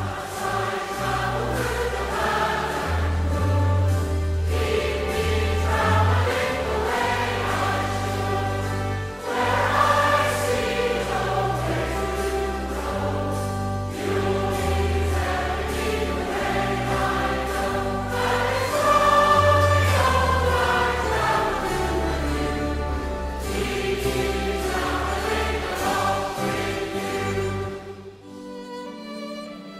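Mixed choir singing a hymn with instrumental accompaniment and a low bass line; the music falls away just before the end.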